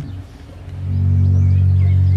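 Short lull, then an electric guitar comes in a little under a second in with a low, sustained chord that holds steady.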